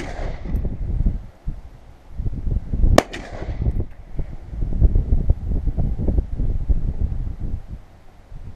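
.50 Beowulf rifle firing a single shot of Alexander Arms 385-grain hollow-point about three seconds in: one sharp, loud crack with a trailing echo. The tail of the previous shot fades at the very start, and a low, uneven rumble of wind on the microphone runs underneath.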